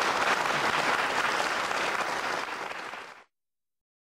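Audience applauding at the close of a live chamber music performance, cut off abruptly a little over three seconds in.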